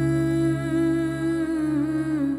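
Background score music: a wordless hummed vocal line held long over a steady low drone, its pitch bending slightly near the end.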